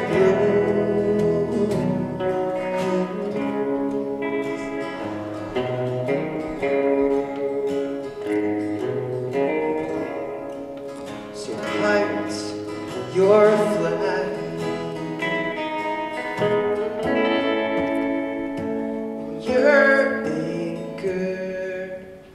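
Live country-folk song: an acoustic guitar strummed together with an electric guitar, with a male voice singing over them.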